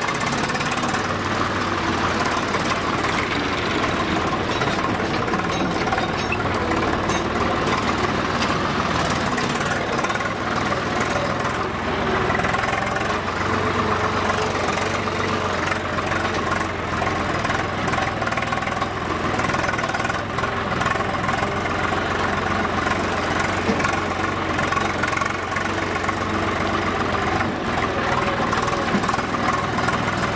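Farm tractor's diesel engine running steadily as the tractor drives along, heard from on board close to the engine.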